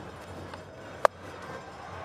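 A cricket bat striking the ball once: a single sharp crack about a second in, a clean hit that sends the ball high for six. Under it runs a low, steady stadium background.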